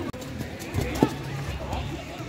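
Indistinct voices of players calling out on the pitch, with one sharp thud about a second in, the sound of a football being kicked.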